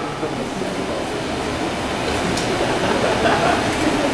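Steady low hum and room noise of a live club stage with faint crowd chatter, the band not yet playing.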